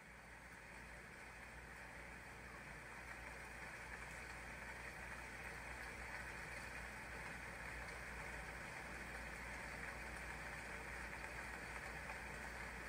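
A faint, steady rushing noise with a low hum under it, with no melody or beat, growing slowly louder over the first few seconds.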